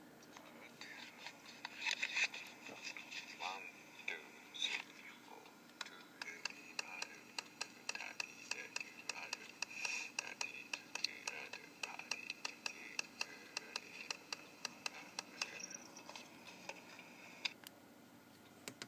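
Playback from a small Sony voice recorder's speaker of an earlier take: a run of quick finger taps, about three a second, for roughly eleven seconds, with a faint voice behind them.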